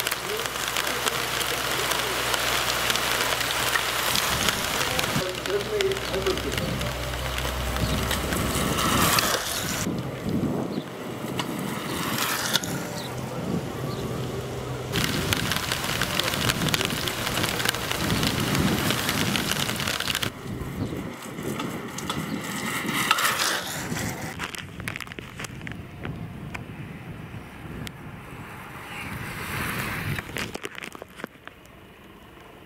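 Rain pattering densely on a car's roof and windscreen, heard from inside the car, with indistinct voices at times.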